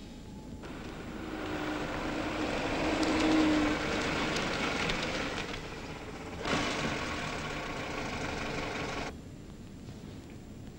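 A car's engine and tyres, swelling as it approaches to its loudest about three and a half seconds in, then easing off. A second stretch of car noise starts abruptly about six and a half seconds in and cuts off suddenly about nine seconds in.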